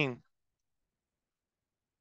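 A man's voice finishing a word right at the start, then complete silence on the video-call line for the rest.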